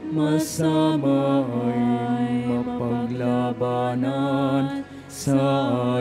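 Church hymn: a singing voice with vibrato holding long notes in phrases, with short breaks between them, over sustained accompaniment notes.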